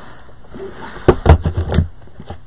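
A quick run of knocks and thuds, about five in under a second, starting about a second in: things handled and set down on a table, likely rolls of ribbon.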